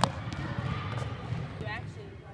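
A basketball bounces once on a hardwood gym floor with a sharp thud right at the start, over a low murmur of voices. A short squeak comes near the end.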